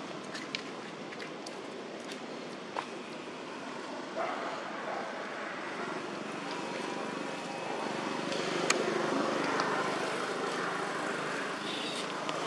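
Steady outdoor background noise with a few faint clicks and taps scattered through it, swelling slightly a little past the middle.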